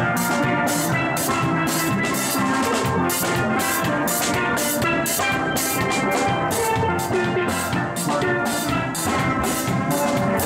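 A steel band playing live: several chrome steel pans ring out a melody and chords over a drum kit keeping a steady beat with cymbal strikes.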